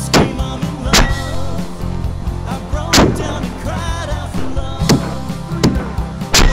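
A rock song with a wavering sung melody, overlaid with five sharp rifle shots spaced unevenly, each followed by a short echo.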